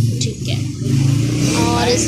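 An engine running steadily nearby, a loud, low hum that wavers a little in level.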